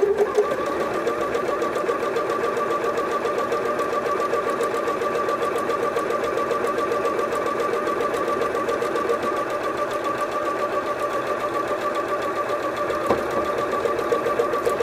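Bernette B38 computerized sewing machine sewing an automatic buttonhole with its buttonhole foot. It runs at a steady speed: a continuous whine over rapid, even needle strokes.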